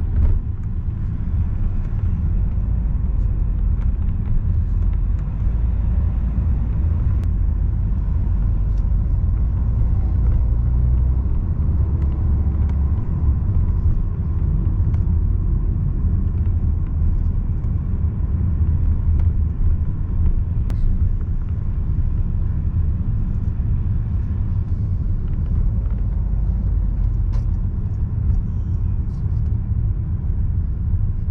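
Steady low rumble of a car driving on city streets, heard from inside the cabin.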